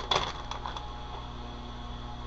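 A clear plastic bag being handled, with a couple of sharp clicks and crinkles right at the start, then only a low steady hum.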